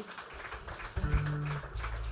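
Electric guitar playing two soft low notes through an amplifier: one about a second in, then a lower note held near the end.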